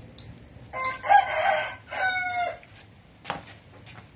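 A rooster crowing once, in two parts with a brief break between them and the second part falling slightly in pitch. A single short knock follows near the end.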